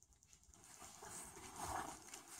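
Handling noise: fabric rubbing and brushing against the camera microphone, faint at first and loudest about three quarters of the way through.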